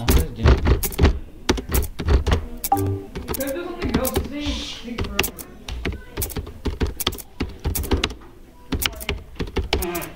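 Keys being typed on a computer keyboard, sharp clicks at a few strokes a second, with voices talking in the background around the middle.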